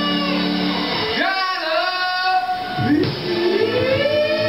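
Live band music with guitar and a singing voice. The low notes drop out for a moment about a second in, leaving a sliding melodic line on its own, and the full band returns near the end.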